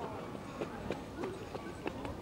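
Background chatter of people's voices with sharp, regular footstep clicks about three a second on a hard surface.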